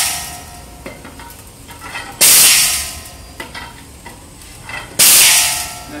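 Drum-top fluorescent tube crusher shattering tubes fed into its chute. There are two sudden loud bursts of breaking glass and hiss, about two and five seconds in, each fading out within a second with a brief ringing. An earlier burst is fading away at the start.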